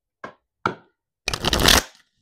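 Tarot cards handled and shuffled: two short snaps of card against card, then a loud riffle of about half a second in the second half.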